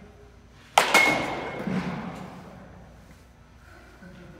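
A bat hitting a ball: two sharp cracks about a fifth of a second apart, a little under a second in, with a brief metallic ring and an echo that fades over the next two seconds.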